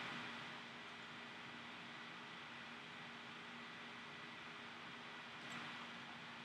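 Quiet room tone: a low, steady hiss with a faint, constant hum.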